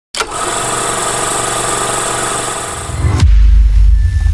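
Logo intro sound effect: a loud, steady wash of hiss and held tones for about three seconds, then a sudden deep bass boom that carries on to the end.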